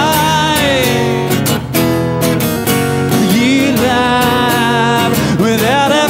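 Acoustic guitar strummed steadily, with a solo voice singing a wavering melody over it.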